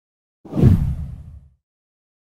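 A single low whoosh transition sound effect. It swells in about half a second in and fades out within about a second.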